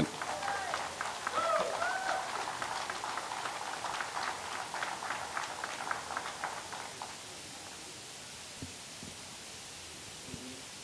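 Audience applauding, a dense patter of hand claps that dies away about seven seconds in.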